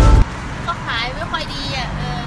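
Music cuts off suddenly about a quarter second in. A woman then speaks over a steady low background hum.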